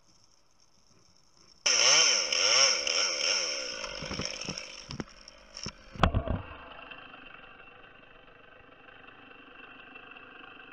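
Gas chainsaw starting suddenly a little under two seconds in and revving up and down, then running at a steady idle. A heavy thump comes about six seconds in.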